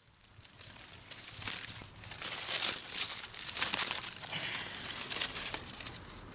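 Dry reed stalks and dead grass crackling and rustling, with many sharp snaps, as they are pushed through or trodden. It builds over the first two seconds and is loudest in the middle.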